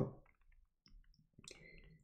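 A few faint, short clicks in an otherwise near-quiet pause.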